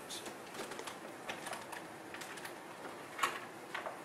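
Faint, scattered clicks and knocks of a guitar case being handled and opened, with the loudest pair near the end.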